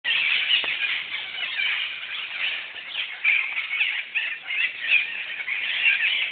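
A flock of parrots calling in the tree canopy: many short, overlapping shrill squawks and chatter with no break.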